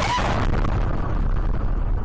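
Gas explosion in a building, recorded from inside a car by its dashcam. The blast sets in just before and continues as a sustained rush of noise as debris is thrown across the street, easing slightly. The cause is suspected to be a gas leak in a restaurant.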